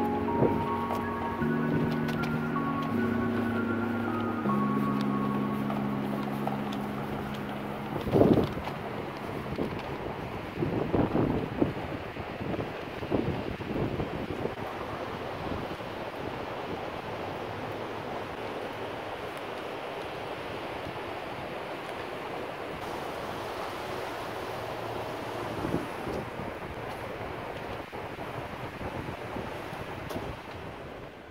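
Background music, sustained chords changing every second or so, that fades out over the first few seconds. After it, a steady rush of wind noise on the microphone, broken by a few knocks and bumps.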